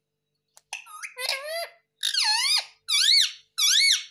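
Indian ringneck parrot calling: a loud, high-pitched run of calls starting about half a second in, ending in three similar calls that each rise and fall in pitch.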